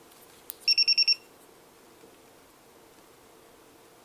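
A sharp click, then a handheld multimeter's piezo beeper gives a quick run of about five short high beeps within half a second as the test leads are shorted together in the resistance range.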